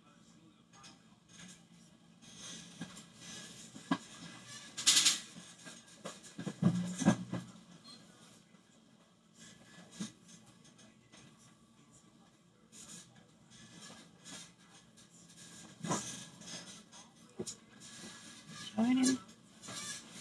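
Small handling clicks and rustles while makeup is applied, with a brief loud rustle about five seconds in. There are short murmured voice sounds around the middle and a brief rising vocal sound near the end.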